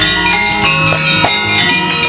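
Javanese gamelan music: bronze metallophones and bells ringing in a steady interlocking pattern, with drum strokes underneath.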